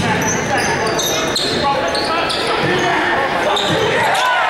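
A basketball being dribbled on a hardwood court in a large gym, with short high squeaks of sneakers on the floor scattered throughout.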